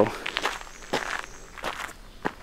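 Footsteps of a person walking: a few separate steps, each a short dull strike, about two-thirds of a second apart.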